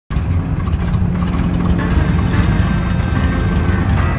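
Single-engine propeller plane's engine running steadily, cutting in abruptly at the start.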